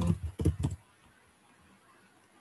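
A short burst of keystrokes on a computer keyboard, typing a short value into a form field, all within the first second.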